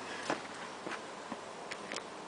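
A child's footsteps on a grass lawn close by: a handful of short, soft, irregular steps over a steady outdoor hiss.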